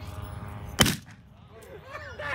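A revolver firing a single blank round about a second in: one sharp crack, the loudest sound here. The gun has fired after jamming, the jam now cleared.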